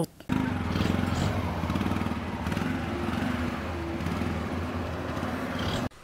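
A small engine running steadily at idle.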